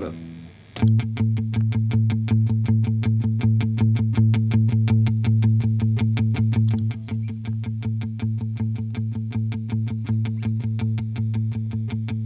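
Distorted electric guitar played through an Engl amp, starting about a second in with fast, even picking, roughly eight strokes a second, on a low A pedal note: the opening of an improvisation in A Locrian mode.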